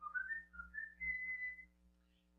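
A person whistling a short tune of quick notes that climbs and ends on one long held high note.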